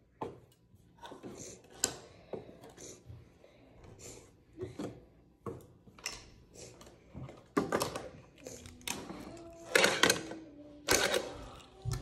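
Wooden fingerboard ramps and obstacles being moved and set down on a wooden table: scattered clacks and knocks, getting busier and louder in the second half.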